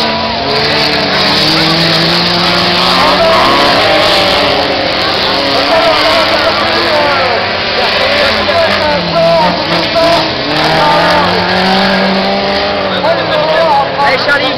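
Several autocross cars racing on a dirt circuit, their engines revving up and falling off again and again as they take the corners.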